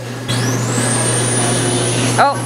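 Wax-figure mold vending machine giving a loud hiss of air about a third of a second in, with a thin whistle that rises and then holds steady, over a low steady hum, as its two mold halves draw apart to release the freshly molded figure.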